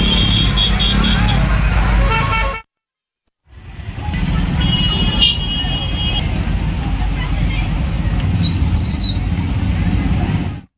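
Busy street noise of traffic and people, with vehicle horns honking: a horn sounds during the first two seconds and again for about a second and a half around five seconds in. The sound cuts out completely for about a second near the three-second mark, then returns.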